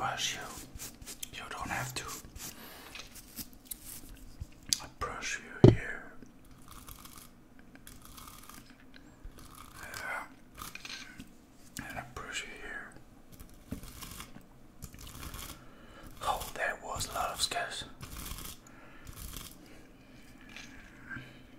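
Close-up ASMR mouth sounds, short clicks and smacks, mixed with the scratching of a wooden bristle brush moved against the microphone. One sharp knock about six seconds in is the loudest sound.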